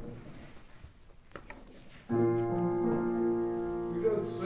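A keyboard instrument begins a hymn introduction about two seconds in, with a chord held steady. Before it there is only a faint rustle and a couple of small clicks from pages being handled.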